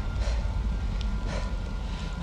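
Wind buffeting the microphone in a steady low rumble, with rain hissing behind it and two soft puffs of noise about a second apart.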